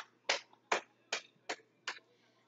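A person keeping a steady beat with their hands: about five sharp claps, evenly spaced a little under half a second apart, marking time for an unaccompanied song.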